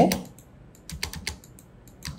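About a dozen light clicks from a computer mouse and keyboard, coming irregularly as points are picked to draw lines.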